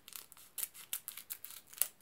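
Scissors snipping through the foil wrapper of a trading-card booster pack: a quick run of short, crisp snips, the loudest one near the end.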